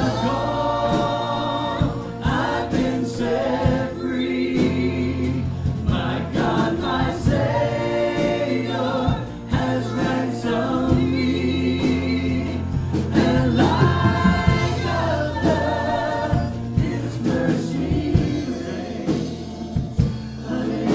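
Live gospel worship band: several male and female singers singing together through microphones over acoustic guitar and keyboard, with a steady bass line underneath.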